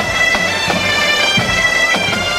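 Bagpipe music with a drum: a steady drone under a changing melody, with a drum beating about every two-thirds of a second.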